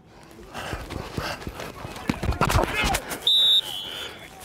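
American football practice play: a run of thuds from pads and helmets colliding, with players shouting, then a referee's whistle blown once, loud and steady for about half a second, a little after three seconds in.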